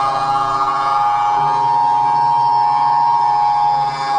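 A man's long, high-pitched wailing scream, sped up so that it sounds like a siren, rising and falling slightly in pitch with a short break near the end.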